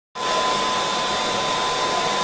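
A pet grooming blow dryer runs steadily: a continuous rush of air with a steady high whine from its motor.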